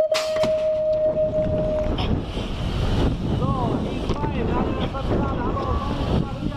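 BMX start-gate cadence ending in its long final tone, held for about two seconds, as the gate drops with a sharp crack just after the tone begins. The bike then rushes down the start ramp with loud wind noise on the helmet-mounted GoPro and the rumble of the tyres.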